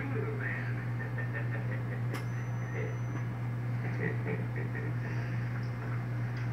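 Television sound heard across a small room: faint, indistinct dialogue from the TV's speaker over a steady low hum. A sharp click about two seconds in, followed briefly by a thin high tone.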